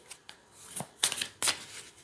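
A deck of tarot cards being shuffled by hand: a quick string of short, quiet card slaps and rustles.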